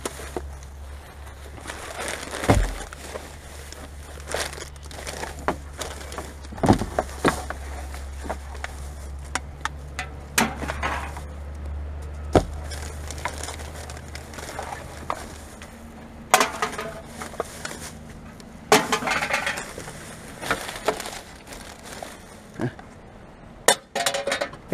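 Empty glass bottles and aluminium cans clinking and clattering in irregular knocks as they are handled and dropped among a pile of recycling, with plastic bags rustling in between.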